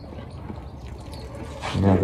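Low, even background noise in a pause between speech, with no clear call or knock standing out; a man's voice starts again near the end.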